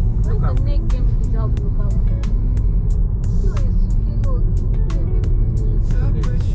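Steady low road and engine rumble inside a moving car's cabin, with a song with singing and a beat playing over it.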